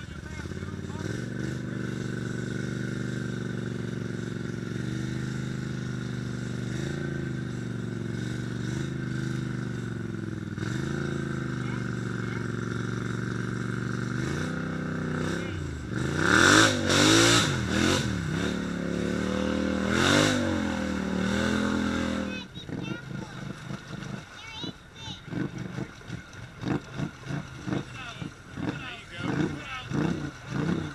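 A snorkeled mud ATV's engine runs steadily at low throttle as it crawls through deep mud water. About 16 seconds in it is revved hard several times, rising and falling, and about 22 seconds in the engine sound stops abruptly, leaving scattered short sounds.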